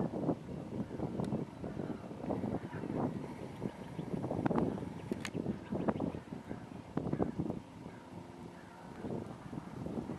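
Wind on the microphone and handling noise from a handheld camera: irregular rumbles, bumps and rustles.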